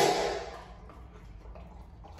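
A short laugh fading out with a little room echo, then quiet room tone.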